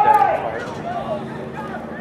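Voices near the microphone: a brief loud call at the start, then fainter talk with no clear words.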